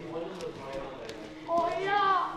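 Voices in a large sports hall: faint talk, then a louder, drawn-out call that rises and falls about one and a half seconds in.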